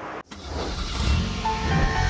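The show's theme music starting with a car-engine sound effect: after a brief gap, a low engine-like rumble swells up, and melodic notes come in about a second and a half in.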